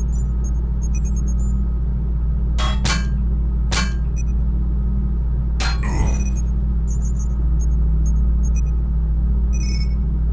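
Dubbed-in fight sound effects: sharp swishing hits, two close together about three seconds in, another near four seconds and a pair around six seconds, with small metallic clinks between them. Under them runs a steady low rumbling drone.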